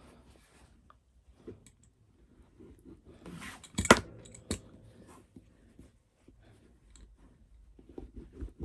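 Soft rustling and rubbing of cotton fabric as a one-inch hem is folded and pressed down along its edge by hand, with a sharp click about four seconds in and a fainter one just after.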